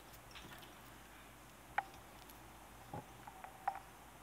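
Quiet room tone with a few small clicks of fly-tying tools being handled, a whip-finish tool being picked up: one sharper click about two seconds in, then two or three softer ones near the end.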